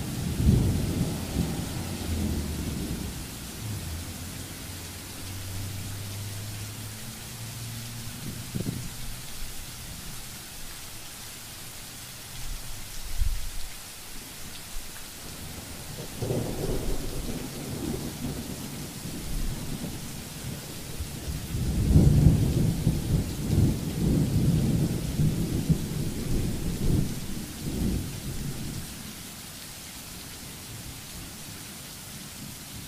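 Steady hiss of rain falling on wet pavement and foliage, broken by irregular low rumbles near the start, again midway, and loudest through most of the last third. A faint low steady hum runs in the quieter stretch early on.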